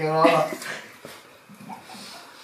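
A person's drawn-out voice, held at a steady pitch, that stops about half a second in. Low, quiet room sound follows.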